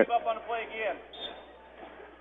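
Faint speech for about the first second, then low, steady gym background noise with no clear event.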